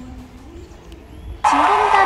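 Quiet stretch with the faint tail of background music, then a voice suddenly starts speaking about one and a half seconds in.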